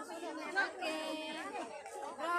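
Several voices talking over one another in lively chatter, one voice drawn out briefly near the middle.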